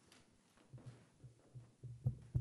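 Near silence, broken by faint irregular low thuds and a few light clicks from a microphone being handled.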